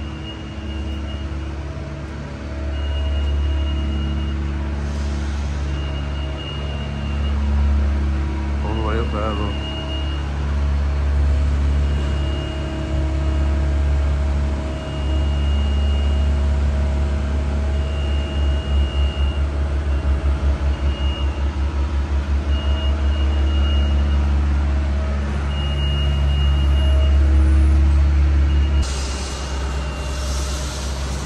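Construction-site machinery: a diesel engine running steadily, with a short high warning beep repeating every second or two, typical of the motion alarm on moving plant. A rush of hiss comes in near the end.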